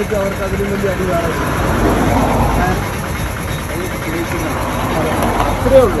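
People talking over a steady low rumble, with a louder voice just before the end.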